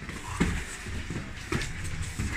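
Scuffling of two people grappling on foam mats, feet shuffling, with two short thumps about half a second in and again at about one and a half seconds.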